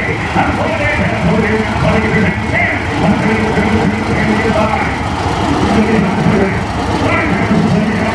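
Engine of a vintage streamlined orchard tractor running as it drives slowly forward, under continuous auctioneer chanting over loudspeakers.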